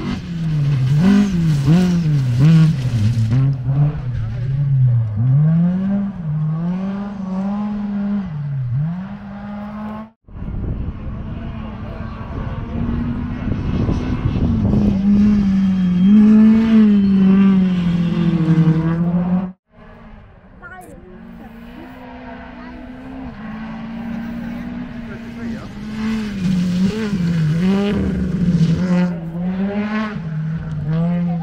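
Rally cars at speed on a gravel special stage, engines revving up and dropping back again and again through gear changes and lifts. The sound is cut off abruptly about ten seconds in and again near twenty seconds, giving three separate car passes.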